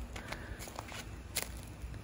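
Quiet footsteps on a wood-chip mulch path: a few soft crunches, with one sharper click about one and a half seconds in.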